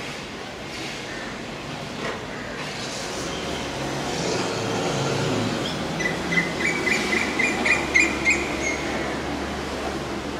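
A steady motor-like rumble and hum that swells from about three seconds in, with a run of quick high-pitched chirps, about three or four a second, over it for about three seconds near the end.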